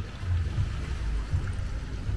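Wind buffeting the microphone outdoors: a low, uneven rumble that swells and dips over a faint steady hiss.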